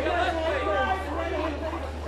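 Several people talking over one another in a general chatter, with a steady low hum underneath.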